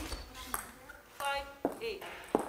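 Table tennis ball clicks off bat and table as a rally ends, and a player gives a short, sharp shout.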